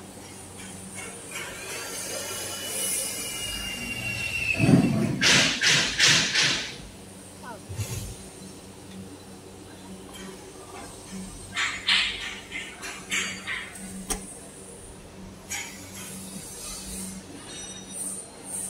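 Steady hum of a stator varnish-dipping line's machinery, with a drawn-out high squeal a second or two in. Several loud noisy bursts come about five to six seconds in and again near twelve seconds.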